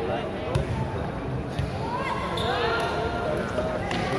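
Volleyball rally in an echoing indoor sports hall: a few sharp ball strikes, about half a second in, near the middle and near the end, over a continuous murmur of crowd and players' voices.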